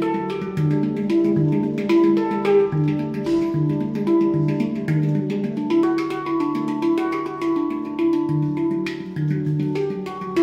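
Handpan played with the fingers: a steady, flowing pattern of ringing steel notes, each new note about every half second, with light percussive taps between them.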